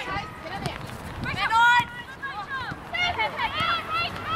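High-pitched shouts and calls from women's voices on and around a football pitch. Several voices overlap with no clear words; the loudest call comes near the middle, and a cluster of shorter calls follows toward the end.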